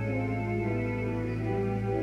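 Church organ playing slow sustained chords over a steady held low bass note, the upper notes changing every half second or so.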